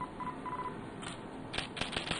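Three short electronic beeps at one steady pitch, the third a little longer, followed about a second and a half in by a cluster of short sharp clicks.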